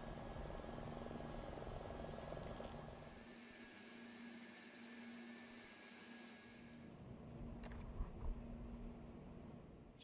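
Faint steady hum with a low rumble and hiss, with no speech. The rumble fades out for a few seconds in the middle and comes back.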